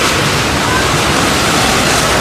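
A landslide debris flow of mud, water and debris rushing down a steep street: a loud, steady, unbroken rushing noise.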